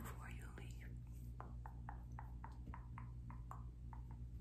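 Soft ASMR mouth sounds: a quick, even run of about a dozen short pops from pursed lips, about four a second, each dropping in pitch.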